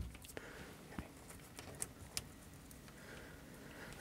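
Faint handling noise of a plastic suitcase wire connector and wires being positioned by hand: a few small, scattered clicks, the clearest about a second in and around two seconds, over low room tone.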